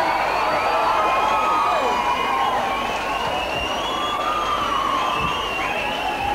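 A concert crowd cheering and screaming, many high-pitched voices overlapping in a steady din.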